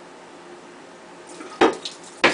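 Wine siphon being started by mouth through a clear plastic hose: a quiet stretch, then two loud splutters about half a second apart, the second just at the end, as the wine reaches the mouth.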